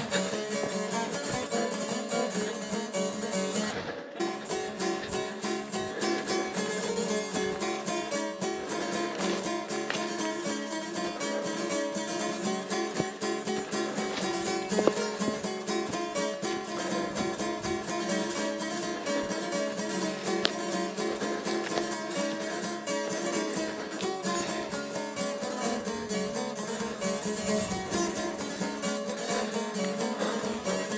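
Background music led by a plucked guitar, playing steadily with a brief dip about four seconds in.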